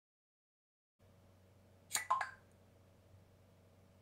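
Dead silence, then a faint steady hum of the recording setup comes in about a second in; about two seconds in, a brief cluster of two or three sharp clicks.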